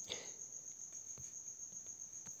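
A faint, steady high-pitched trill that holds one pitch throughout, with a brief soft hiss at the very start.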